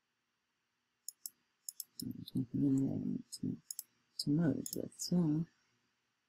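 A few short, sharp clicks of a computer pointer button, the first about a second in, then a voice talking over the second half with a few more clicks between phrases.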